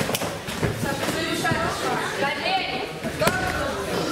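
Gloved punches landing as a few sharp thuds, the loudest near the end, as a fighter goes down onto the ring canvas, with shouting voices in the hall between the blows.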